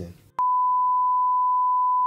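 A test-pattern tone, the single steady beep played over television colour bars, switching on abruptly with a click about half a second in and holding one unchanging pitch.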